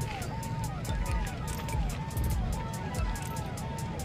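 Electronic vehicle siren sounding a repeating wail: a held tone that drops in pitch, about twice a second. Crowd chatter and a rhythmic beat of music lie underneath.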